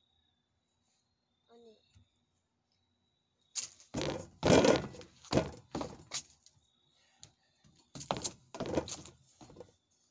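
A child's feet stomping and scuffing on wooden deck boards during ninja-style kicks and lunges, in two loud clusters of thuds and scrapes after a quiet start.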